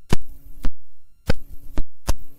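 Four loud thumps about half a second apart, with a low hum coming in after the first, on an old recording: handling or knocking noise.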